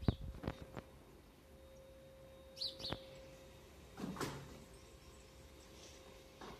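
Quiet handling of a paper catalogue: a few light knocks and clicks at the start, and a short papery rustle about four seconds in. A bird chirps twice in quick succession about two and a half seconds in.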